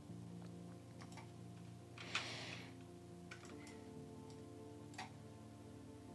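Faint background music of sustained tones that change about halfway through, with a few sharp computer-mouse clicks and a short soft rustle about two seconds in.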